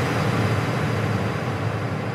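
The noisy, rushing tail of an animated logo ident's sound effect, slowly dying away.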